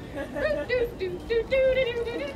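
A woman's high voice singing a few short held notes that step in pitch, ending on a longer held note in the second half.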